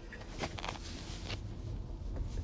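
Quiet cabin of an electric car moving at walking pace during a slow turn: a low, steady rumble of road and tyre noise with a few faint, irregular clicks.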